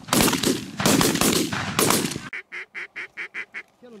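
Three shotgun blasts in quick succession over the first two seconds, each with a ringing tail, as hunters fire at ducks flying overhead. Then a rapid, evenly spaced run of about eight quacks.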